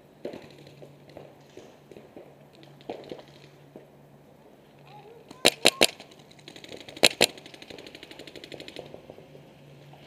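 Paintball markers firing: a quick burst of three sharp shots about halfway through, then two more about a second and a half later. A fainter, faster string of shots runs for a couple of seconds after that.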